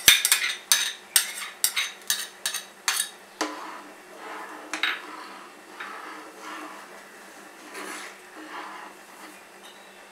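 A metal spoon clinking sharply against a bowl and saucepan in quick succession as tomato sauce is scraped and knocked off it into the pan, then softer scraping as the spoon stirs the soup in the saucepan.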